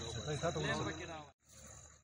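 A person speaking, with no other clear sound. The speech cuts off abruptly about a second and a half in, and a brief near silence follows.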